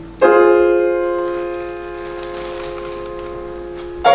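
Steinway grand piano played four hands: a loud full chord struck just after the start, left ringing and slowly dying away, then another loud chord struck right at the end.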